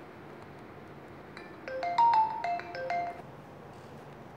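A short electronic alert melody, about eight quick notes stepping up and down, beginning about a second and a half in and ending after under two seconds, loudest in the middle.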